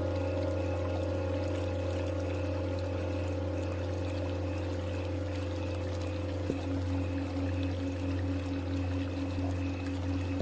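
Tibetan singing bowls ringing in long, slowly wavering tones over a steady wash of running water. About six and a half seconds in, another bowl is struck and its lower tone joins in.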